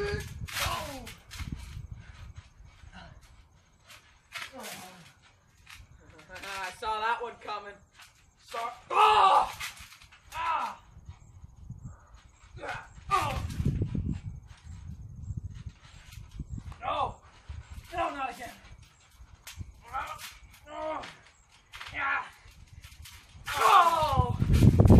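Boys' voices shouting and grunting in short, wordless calls while wrestling on a trampoline, with a few dull thumps of bodies landing on the trampoline mat, the heaviest about halfway through.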